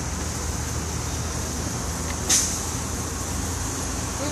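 Steady low rumble of vehicles in road traffic, with one brief hiss a little over two seconds in.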